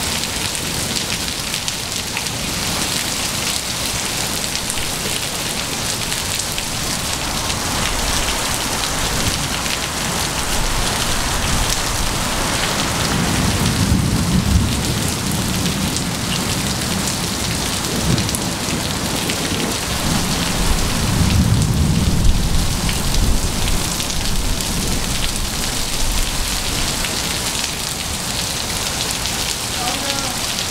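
Heavy rain pouring onto gravel and pavement in a steady hiss, with two low rolls of thunder, one about halfway through and another a little past two-thirds in.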